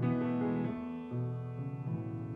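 Piano chords in a band's pop-rock song intro, each chord held about a second before the next.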